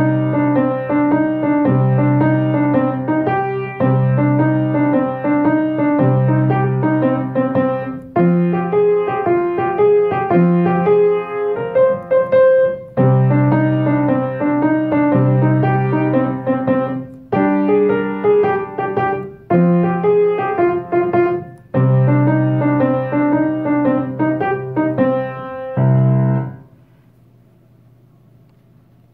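A Kawai piano playing a 12-bar blues in C: a repeating left-hand bass of root and fifth moves through the chord changes under a busier right-hand melody. It stops shortly before the end.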